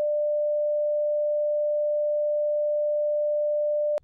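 A steady censor bleep: one unbroken pure tone at about 600 Hz, held at an even level, covering the words of the story.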